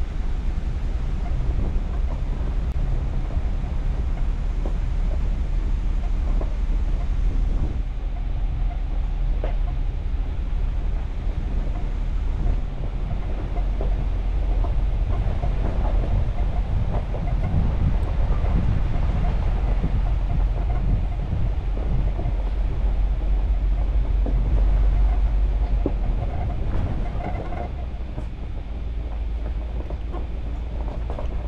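Ram 2500 Power Wagon crawling along a rough, stony dirt track: a steady low rumble from the truck, with tyres crunching and the truck rattling over the stones.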